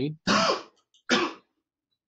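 A man clearing his throat twice in two short, rough bursts.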